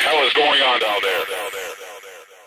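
A voice sound effect: a quick run of short, high, sped-up syllables, about six a second, fading out toward the end.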